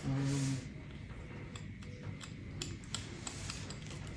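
Faint scraping and scattered light ticks of a metal curette loosening debris from around a patient's toes, after a short hummed "mm" at the start.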